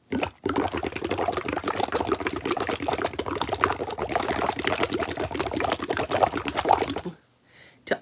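Air blown through a straw into a cup of soapy water, bubbling rapidly and without a break as a head of foam builds up; the bubbling stops about a second before the end.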